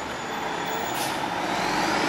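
Road traffic noise from a passing vehicle, an even rushing sound that grows steadily louder as it approaches.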